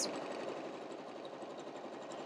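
Juki computerized sewing machine stitching a seam, running steadily.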